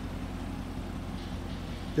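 Steady low rumble with a faint hiss above it and no distinct event.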